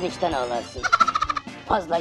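A comic, cartoon-style puppet voice speaking in Turkish, with a rapid warbling trill of about ten pulses a second in the middle.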